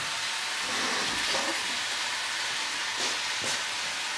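Fajitas sizzling in a frying pan in the background: a steady, even hiss of frying.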